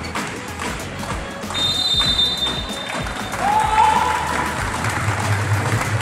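Music playing, with some voices and light clapping; a brief high steady tone sounds about a second and a half in.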